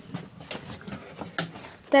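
Scattered light footsteps and knocks on the wooden boards of a tree-house play structure, several irregular taps, with a voice starting near the end.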